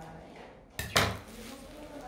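A sharp metallic clack from a pair of scissors, just before a second in, as the cord is cut and the scissors go down on the wooden table.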